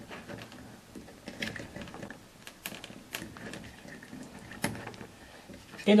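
Small plastic and metal clicks and handling noises as an H1 LED bulb is pressed into a rotating beacon's socket and its wire connector pushed on, a handful of sharp clicks scattered through.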